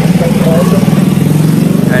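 Small motorbike engine running close by as it passes, a loud, steady low engine note.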